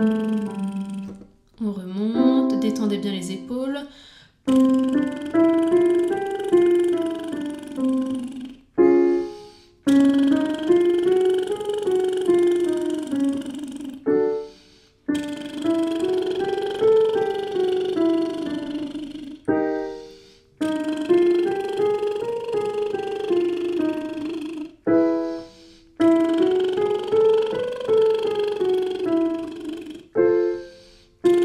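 A woman doing lip trills up and down a short scale, with a digital piano playing along. A short piano chord between repeats sets each new key, and each repeat goes a step higher.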